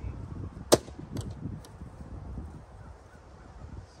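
A plastic vacuum cleaner powerhead being struck hard: one loud, sharp crack about three-quarters of a second in, then two lighter knocks about half a second apart. Wind rumbles on the microphone. The powerhead holds together under the blows and is tough to break.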